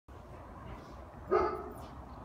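A dog barks once, briefly, a little over a second in.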